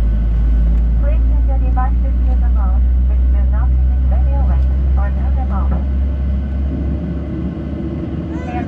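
Jet airliner's engines heard from inside the cabin while taxiing: a steady low rumble that eases slightly near the end, under a cabin public-address announcement.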